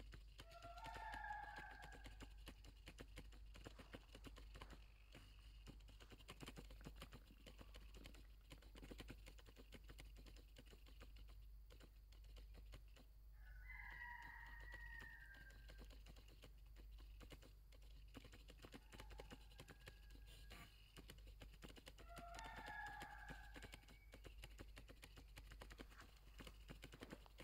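Very faint outdoor ambience: a constant patter of tiny clicks, with three short distant animal calls of about a second each, near the start, in the middle and near the end.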